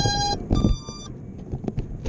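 Two short electronic beeps from an FPV quadcopter on the ground, the second higher in pitch than the first, over low rustling noise on the microphone.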